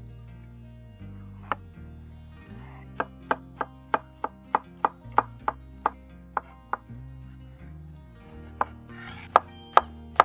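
Chef's knife chopping cucumber on a wooden cutting board: a single knock, then a run of sharp chops about three a second, a pause, and more chops near the end.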